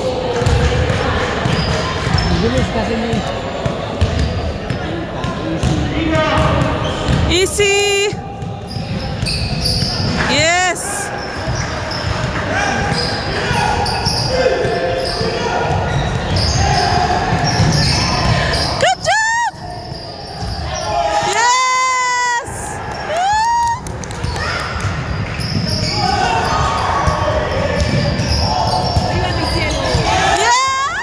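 Basketball game on a hardwood gym floor: the ball bouncing and sneakers squeaking, with several short rising squeaks through the middle, over players' and spectators' voices in a large gym.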